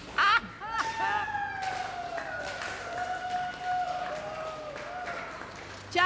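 A woman singing a cappella, holding one long high note for about five seconds as its pitch slowly sinks, after a short vocal burst at the start, with a few scattered claps.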